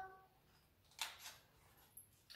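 Near silence with one brief paper rustle about a second in: a page of a picture book being turned.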